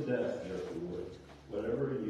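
A man's voice speaking, reading aloud, with a short pause in the middle.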